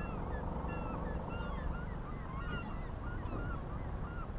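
A flock of birds calling, many short overlapping calls throughout, over a steady low rumble of wind on the microphone.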